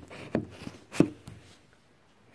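Handling noise from a phone being moved about in the hand: soft knocks and rubs against the device, the sharpest knock about a second in.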